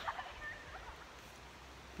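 Quiet outdoor background with a steady low rumble and a faint, brief chirp about half a second in.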